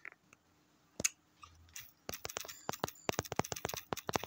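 Typing taps on a smartphone's on-screen keyboard: a single tap about a second in, then a quick, irregular run of sharp taps from about two seconds in.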